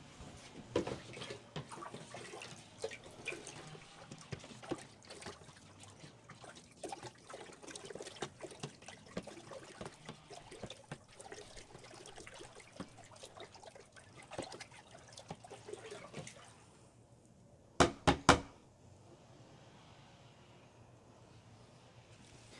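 Nutrient solution being stirred with a stick in a plastic tote: irregular sloshing and splashing for about sixteen seconds, then it settles. About eighteen seconds in comes a quick run of a few sharp knocks.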